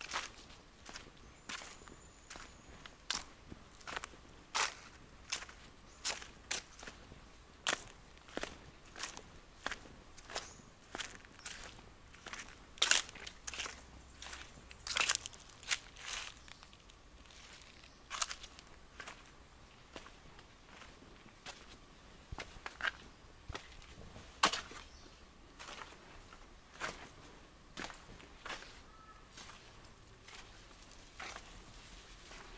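Footsteps crunching on dry leaves and sandy ground at a steady walking pace, about three steps every two seconds, with a few louder crunches partway through.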